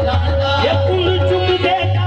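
Live qawwali music over loudspeakers: a steady held note under a winding melody, with a heavy low bass.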